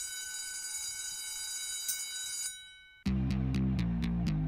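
A bright, steady bell-like ringing, like an alarm bell, opening the song's backing track; it fades out about two and a half seconds in. About three seconds in the beat kicks in, with bass and drum kit hits in a steady rhythm.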